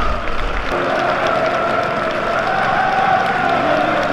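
Football stadium crowd applauding and cheering, with many voices singing together over the clapping from about a second in.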